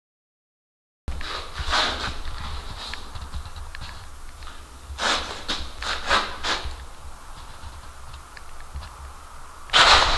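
Silent for about the first second, then a person's heavy breathing in short breaths, some in quick in-and-out pairs, over a low rumble on a moving handheld camera's microphone. A sudden loud rush of noise comes near the end.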